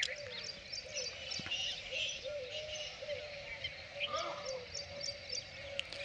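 Morning chorus of birds chirping: many short, high calls all through, over lower wavering calls.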